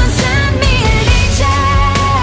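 Pop-rock song with drums and a full band, a woman's voice singing a melody that ends on a long held note.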